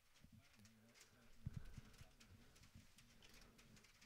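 Faint, low cooing of pigeons, in a series of short wavering calls, with a few soft knocks about a second and a half in.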